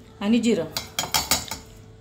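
Stainless-steel bowls clinking together several times in quick succession as cumin seeds are tipped from one into the other.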